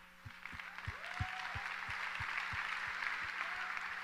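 Audience applause that builds up over the first second and then carries on steadily, over a faint steady mains hum.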